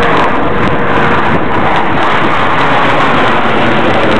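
Loud, steady roar of Blue Angels F/A-18 Hornet jets flying in formation overhead.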